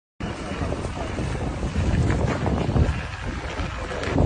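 Wind buffeting the phone's microphone in a steady low rumble, with indistinct voices of people around.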